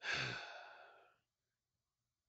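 A man's heavy sigh: a sudden breath out that fades away over about a second, in exasperation at a streaming error.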